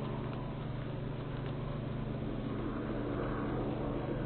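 Steady drone of a helicopter passing overhead, heard through a Ring security camera's microphone, which cuts off the high end.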